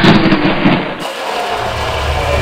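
Soundtrack noise texture: a dense, loud rushing hiss that about halfway through shifts to a quieter hiss over a low rumble.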